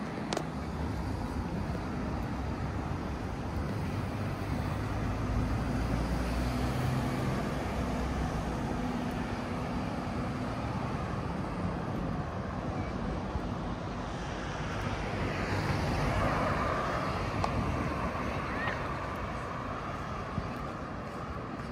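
City street traffic: cars passing on the road over a steady background hum, swelling louder about three quarters of the way through as a vehicle goes by.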